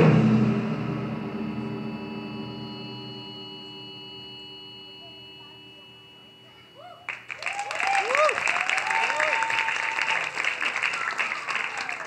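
The last strokes of a taiko drum ensemble ring out and fade away slowly over about seven seconds. Then the audience breaks into applause, with cheers and whoops.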